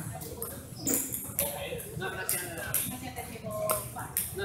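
People talking in the background of a hall, with a few sharp clicks of a table tennis ball bouncing about a second in and again near the end.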